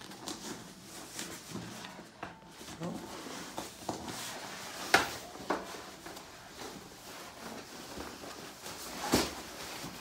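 Fabric rustling with scattered plastic clicks and knocks as the fabric cover of a Bugaboo Fox pushchair is unbuttoned and worked off its frame. The sharpest knocks come about five seconds in and again near the end.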